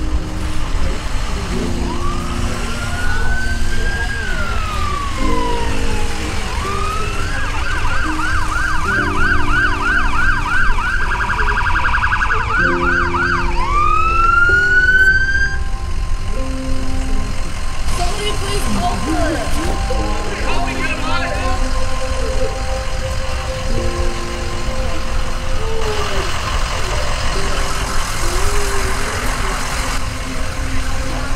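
Emergency vehicle siren: a slow wail rising and falling, then a fast yelp warbling for several seconds, then another rising wail before it fades out about halfway through. Low held chords, changing every second or so, and a low rumble run underneath.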